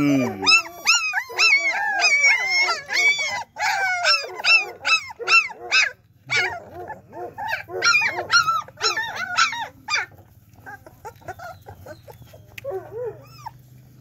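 A litter of young German shepherd puppies whining and yelping, many high-pitched cries overlapping. After about ten seconds they thin out to a few softer whimpers.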